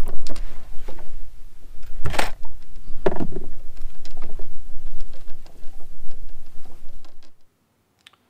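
Wind buffeting the camera's microphone on an open boat, a loud low rumble, with a few knocks, the strongest about two seconds in and another about three seconds in. The sound fades out about seven seconds in.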